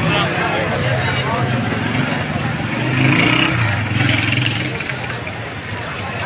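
Busy street noise: indistinct voices over running vehicle engines, a little louder about halfway through.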